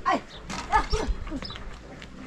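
A dog yelping several times in short calls, each falling in pitch.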